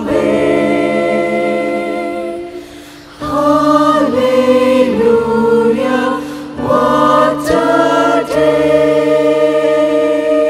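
Mixed choir singing in parts through the closing phrases of a gospel song: a held chord fades out about two and a half seconds in, a new phrase with moving lines starts about a second later, and the choir settles on a long held chord near the end.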